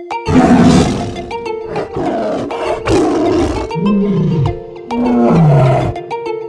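Lion roar sound effect repeated several times over a children's-song music intro, the later roars falling away in pitch.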